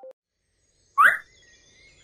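A single short rising chirp, like a cartoon bird tweet sound effect, about a second in, after a near-silent pause.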